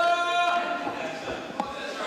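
A single voice holding one drawn-out shout for about the first half second, then dropping away. Near the end come a couple of faint thuds in the ring.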